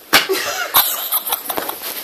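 A sudden loud outburst, then rough, breathy bursts of laughter and cough-like noises coming irregularly, several a second.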